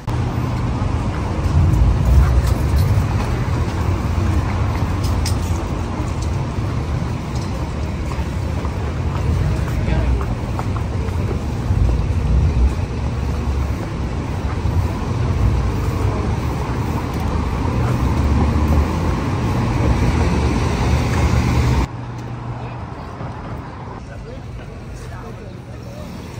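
City road traffic: cars passing on a busy street, with a heavy low rumble under a steady haze of street noise. It drops off suddenly about 22 s in to quieter street sound.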